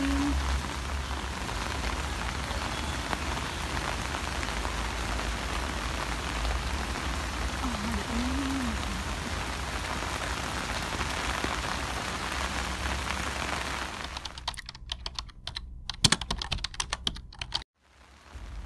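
Steady rain falling for about fourteen seconds. The rain then cuts out and a run of keyboard typing clicks follows, a typing sound effect for a typed-on title, before a brief silence near the end.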